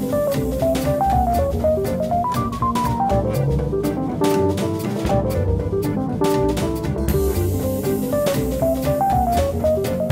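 Roland TD-30KV V-Drums electronic drum kit played with wire brushes, a busy brush groove of many light strokes, over a jazz backing track with a bass line and a melody that steps up and down in short notes.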